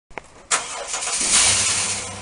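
A car engine starting, used as an intro sound effect. A click comes first; about half a second in, the engine catches with a sudden loud burst that builds for about a second and then settles into a steady low idle.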